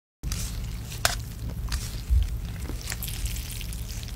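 Cold buckwheat noodles being lifted out of their broth with chopsticks onto a wooden ladle: a wet, crackly dripping with a few sharp clicks of the chopsticks and a low bump about two seconds in.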